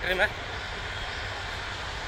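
Steady low rumble and hiss of background noise, even throughout, with no distinct knocks or changes. A short spoken word ends just at the start.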